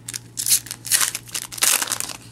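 Foil trading-card pack wrapper crinkling as it is torn open and peeled off the cards, in three bursts about half a second apart.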